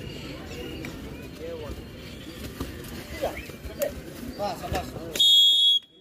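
Crowd of spectators chattering and shouting, then about five seconds in a referee's whistle gives one short, loud, shrill blast as the raider is tackled. The sound cuts off abruptly after it.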